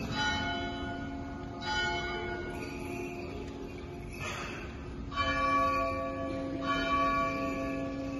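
Church bell tolling slowly, struck about four times at intervals of a second and a half or more, each stroke ringing on and fading into the next: the slow toll for the Holy Week Crucifixion service.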